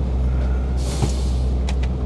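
Mercedes-Benz Actros truck engine idling, heard from inside the cab as a steady low hum. A short hiss of air comes a little under a second in, and a couple of light clicks follow near the end.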